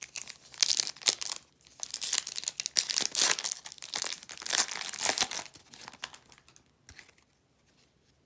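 Plastic trading-card pack wrapper crinkling as it is torn open and pulled off the cards by hand: a rapid crackling rustle for about five seconds that then trails off into a few faint rustles.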